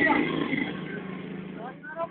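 An engine running steadily, with people's voices over it.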